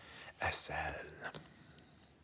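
Speech only: a man's voice, low and half-whispered, with a sharp 's' hiss about half a second in.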